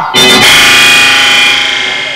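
A loud dramatic musical sting: a dense, bright sustained chord hits at once and slowly fades over about two seconds.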